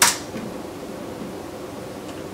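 A single sharp computer-keyboard keystroke at the start, then a steady low hiss of room and microphone noise.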